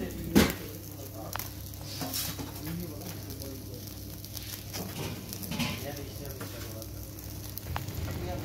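Skewered chicken pieces sizzling over the wood fire in a clay oven, with a sharp knock about half a second in and a few faint clicks after.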